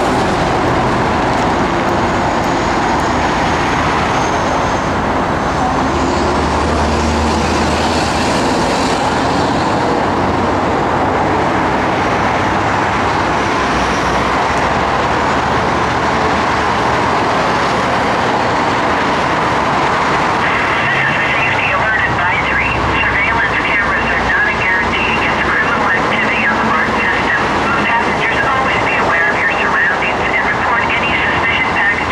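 Steady noise of heavy freeway traffic, trucks and cars passing. About two-thirds of the way in, a high, rapidly fluttering buzz joins in.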